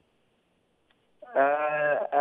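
About a second of near silence on an open telephone line. Then a man's voice comes over the phone with a long, drawn-out hesitation sound at a steady pitch, leading straight into speech.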